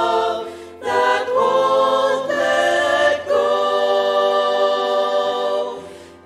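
Choir singing long held chords in harmony without distinct words. One phrase fades out just under a second in, a new one swells up and moves through several chord changes, and it fades again near the end.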